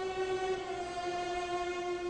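Orchestral opera music: the orchestra holds a sustained chord, which steps slightly lower about a second in.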